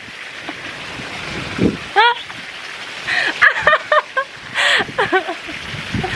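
A woman and a man laughing in short bursts, with a steady rushing noise underneath.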